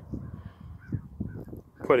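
A crow cawing faintly a few times over low rumbling background noise.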